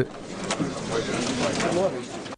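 Indistinct murmur of many voices talking at once in a large meeting room, a steady hubbub of conversation with no single voice standing out.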